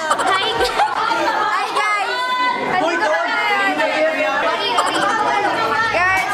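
Several young people's voices chattering and talking over one another.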